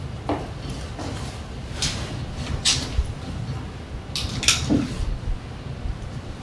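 Room noise over a steady low hum, with a few brief rustles and knocks, the sharpest about two, two and a half and four and a half seconds in.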